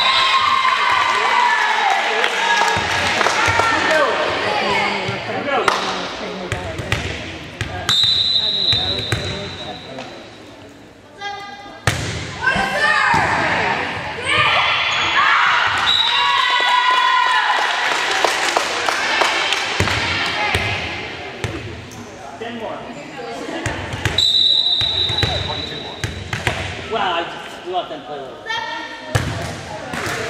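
A volleyball rally in an echoing gym: players calling and spectators shouting and cheering, with the ball's hits and bounces coming through as sharp thuds. A referee's whistle blows twice, once about eight seconds in and again about twenty-four seconds in, each a steady high blast of about a second.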